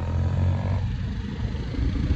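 Motorcycle engine running while riding, a steady low rumble with road and wind noise.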